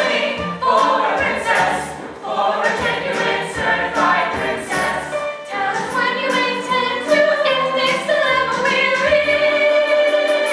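A large stage cast singing a show tune together in chorus, the sung melody shifting continuously with no spoken words.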